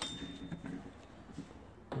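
A single small metallic clink with a short, high ring, from the steel hinge centering drill bit and its sliding sleeve being handled.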